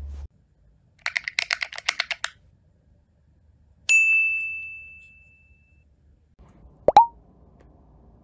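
Edited-in sound effects: a quick run of about ten ticks, then a bright bell-like ding that rings out for about two seconds as the title comes up, then a short rising pop near the end, the loudest of the three.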